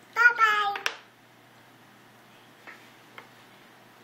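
A baby's high voice says two syllables, "bye-bye", each falling in pitch, in the first second; a couple of faint taps follow later.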